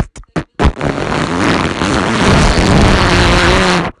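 A few short sharp hits, then a loud, rough noise burst of about three seconds that cuts off suddenly, a dubbed-in cartoon sound effect.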